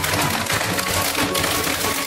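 Clear plastic packaging bag crinkling and crackling as it is handled and opened around a coiled fiber optic patch cable, over background music.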